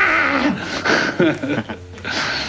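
A person laughing: several short laughs in a row, fading near the end.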